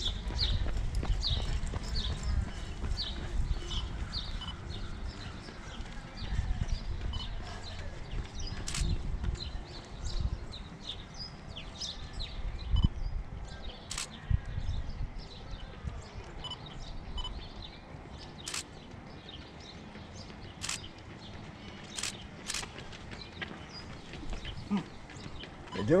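Outdoor roadside ambience: a gusty low rumble that eases after about fifteen seconds, with a quick run of light high ticks or chirps early on and a few sharp clicks later.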